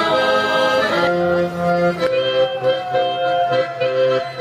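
Live Polish folk music with the accordion to the fore: held chords for about the first two seconds, then a brisk dance tune with a steady beat.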